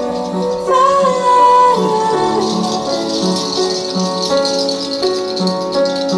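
Live music: a woman sings a line that glides down and ends about two seconds in, over sustained pitched accompaniment. A high, steady rattling rhythm comes in after her voice stops and carries on under the instruments.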